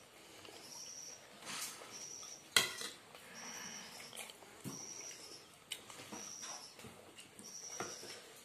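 Tableware clinks and knocks, a serving spoon against ceramic bowls and plates, the loudest a sharp clack about two and a half seconds in. A faint, short high chirp repeats about every second and a half.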